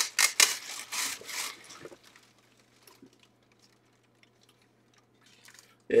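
Hands rubbing and scraping as a loose ear pad is pressed back into a replica football helmet: a quick run of rustling strokes that dies away after about a second and a half.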